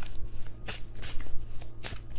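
A deck of tarot cards being shuffled by hand: a run of short, irregular card snaps.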